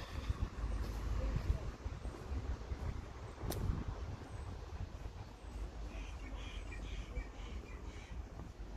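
Outdoor ambience: a low, uneven rumble, one sharp click about three and a half seconds in, and faint bird chirps near the end.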